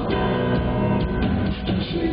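Live band playing a short instrumental passage between sung lines: a strummed acoustic-electric guitar over keyboard, with a steady low beat.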